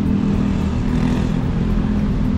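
Road traffic close by: the steady low hum of car and motorcycle engines crawling past in slow, dense traffic.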